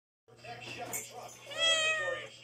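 A kitten meows once, a single high call starting about one and a half seconds in.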